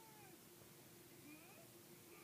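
Faint voice calling out from the film's soundtrack on the television across the room, a few short falling calls over a steady low hum.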